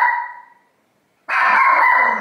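A small dog barking in two long, high-pitched barks, with a silent gap between them.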